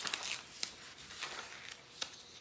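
Faint rustling and a few light taps of a paper sign being handled and pressed flat onto a felt board.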